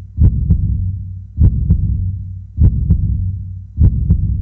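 Heartbeat sound effect: paired low thumps, lub-dub, about every 1.2 seconds over a steady low hum, four beats in all.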